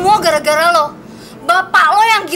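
A woman's voice speaking sharply in two stretches, with a short pause about a second in.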